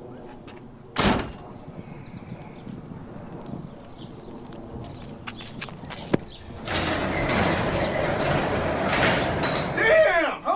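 Staged sounds of someone moving about a garage in the dark: scattered knocks and clicks, a sharp bang about a second in, then a loud rough clattering noise lasting about three seconds near the end.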